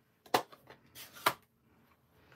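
Two sharp plastic clicks about a second apart, with a soft rustle just before the second: a plastic stamp ink pad case being picked up and its lid opened.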